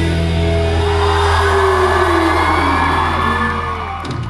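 Closing held chord of a pop song played loud over a concert PA, with the audience whooping and shouting over it; the music stops near the end.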